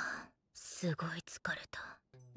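Hushed, whispered speech in short breathy phrases, with a brief pause about a third of a second in.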